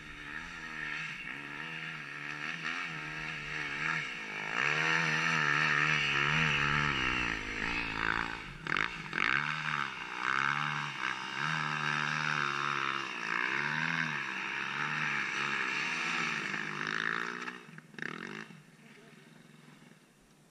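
Enduro dirt bike engine revving again and again, its pitch swinging up and down in long rises and falls, then dropping away near the end.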